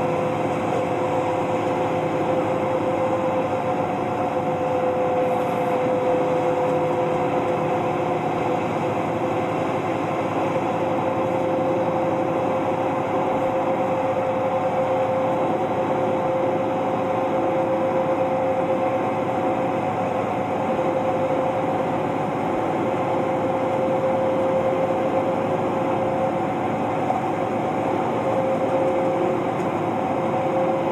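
Inside a moving city bus: steady engine and road noise with a constant whining hum, unchanging throughout.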